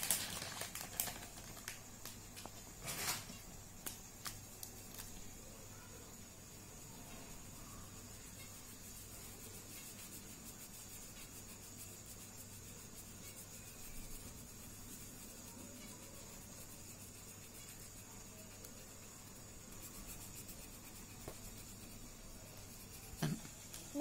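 A plastic packet of sketch pens rustling, with a few light clicks, in the first few seconds; then only a faint steady room hum and hiss while a felt-tip pen colours on paper.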